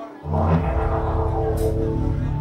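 Live electro-psychedelic rock band: after a brief dip, a heavy bass-driven full-band section comes in about a quarter second in, with sustained guitar and synth tones held above it.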